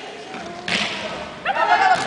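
A single thud of a volleyball being struck about two-thirds of a second in, echoing briefly in the gym hall.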